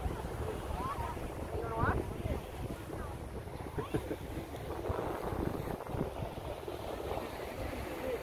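Wind buffeting a phone microphone as a steady, uneven low rumble, with faint voices in the background.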